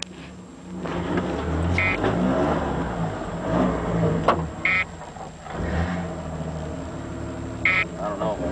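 4x4 pickup truck engine heard from inside the cab, revving up about a second in and pulling through mud on a rough trail. A sharp knock comes near the middle and brief squeaks sound three times over the bumps.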